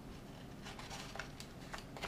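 Folded origami paper rustling softly, with a few small crisp crackles, as a triangular flap of one paper box unit is pushed into the slot of another.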